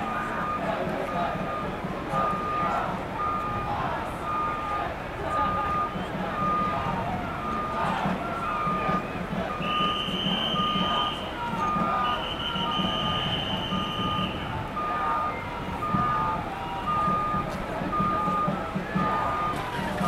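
A vehicle's reversing alarm beeping steadily at one pitch, roughly once a second, over idling engines and distant voices. Around the middle a higher tone sounds twice, each for a second or two.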